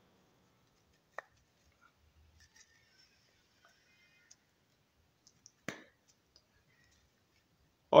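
A few small clicks and taps as a steel ball bearing is handled and pressed into a freshly bored hole in wood, with a short click about a second in and a sharper, louder one about two-thirds through; the rest is very quiet.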